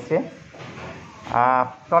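Speech: a man talking in Bengali, with a quieter pause and then one drawn-out spoken syllable about one and a half seconds in.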